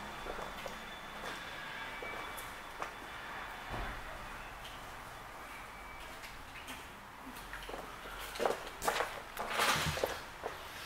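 Footsteps and handling bumps of someone walking with a handheld camera over a hard shop floor, against quiet room tone, with a run of louder footfalls and knocks near the end.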